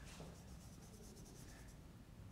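Chalk writing on a blackboard: a quick run of faint, scratchy chalk strokes over the first second or so.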